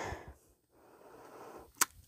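A quiet pause with faint room noise and a single short, sharp click near the end.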